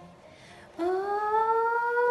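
A woman's long, drawn-out "Oh!" of delight. It starts nearly a second in, rises in pitch and is then held.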